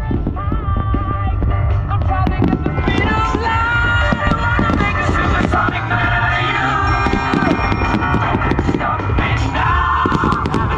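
Loud music playing over a fireworks display's sound system, with fireworks bursting and crackling through it in many sharp bangs.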